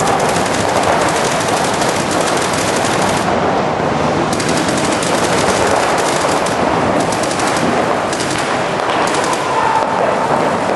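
Paintball markers firing in rapid strings of shots, several at once, with the firing thinning and picking up again through the stretch.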